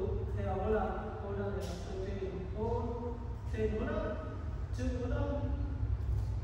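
Speech only: a man's voice in short phrases, over a low steady hum.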